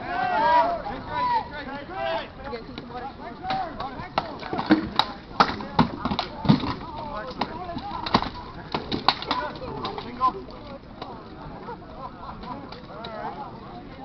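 Rattan weapons striking shields and armour in a melee: a run of sharp cracks and knocks, densest from about four to eight seconds in. Shouting voices at the start.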